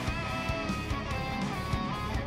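Background music: an electric guitar melody with bent, wavering notes over a full band backing.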